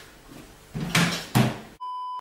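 A man retching twice in strained, gagging heaves. Then a steady electronic test-tone beep that cuts off suddenly.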